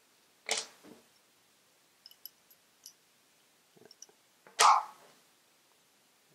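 Small steel hex keys and an aluminium camera L-bracket handled on a wooden table: a few light metallic clinks, with a louder handling noise about half a second in and the loudest one a little after four seconds.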